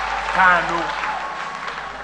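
A short spoken phrase from a man's voice over congregation applause that fades away.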